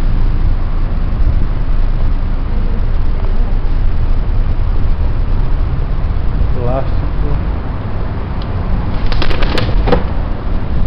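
Wind buffeting the microphone of a handheld camera: a loud, uneven low rumble, with a few sharp clicks near the end.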